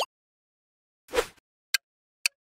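Quiz sound effects: a short pop a little over a second in, then a single sharp tick near the end that starts a countdown timer ticking about twice a second.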